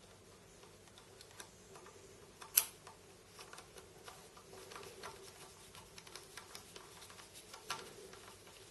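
Faint clicks and ticks of a precision screwdriver with a T6 Torx bit turning a mounting screw into the side of a Crucial C300 SSD, with one sharper click about two and a half seconds in.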